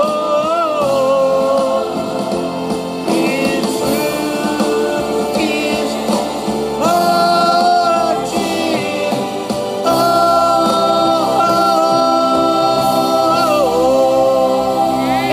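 Male singer holding long notes over a backing track with choir, in the big finish of a song.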